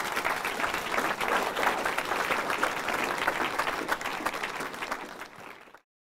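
A small audience applauding with many hands clapping steadily. The applause dies down and then cuts off sharply near the end.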